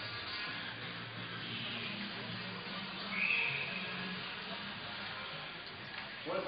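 Faint ice-rink ambience during a stoppage in play: music playing over the arena sound system under a low crowd murmur. A brief, slightly louder high sound comes about three seconds in.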